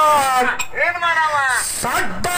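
A man's voice singing a dollina pada, a North Karnataka folk song, loudly into a stage microphone, with long held notes that slide in pitch and a falling line about a second in.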